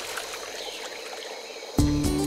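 Soft water sloshing and trickling as a small figure paddles through a pond, under quiet background music. Near the end, a loud, sustained low musical note comes in suddenly.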